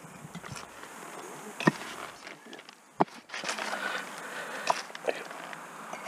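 Bricks being set down by hand on brick and soil: several sharp knocks, the loudest about one and a half and three seconds in, with soft rustling and scraping in between.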